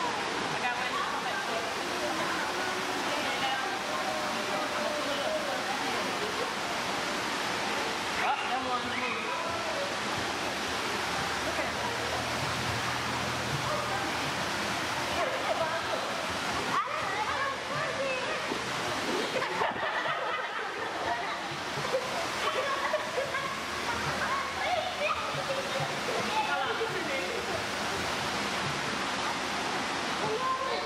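Steady rush of circulating water in a stingray touch pool, with indistinct chatter from many voices throughout.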